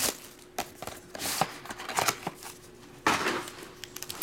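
Plastic shrink wrap crinkling as it is stripped off a trading-card box, with the box and foil packs handled, in irregular rustling bursts.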